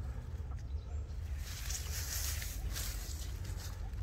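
Grass and wild strawberry leaves rustling as a hand moves through them, in soft swishes that are strongest around the middle, over a steady low rumble.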